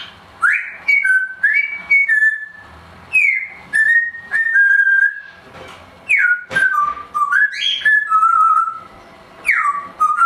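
Timneh African grey parrot whistling several short phrases with brief pauses between them. Each phrase opens with a quick falling swoop and settles into held notes that step up and down in pitch.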